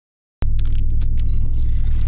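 Cinematic logo-sting sound design: after a brief moment of silence, a sudden hit opens into a loud, steady deep rumble with crackling on top.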